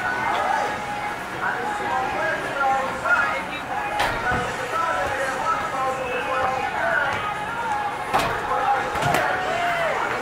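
Oversized over-inflated footballs thrown at a football-toss target board, hitting it with three sharp knocks: one about four seconds in and two near the end, about a second apart. Voices chatter throughout.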